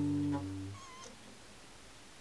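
The last strummed chord of an acoustic guitar ringing out and dying away within the first second, followed by a brief, faint wavering squeak about a second in, then quiet room tone.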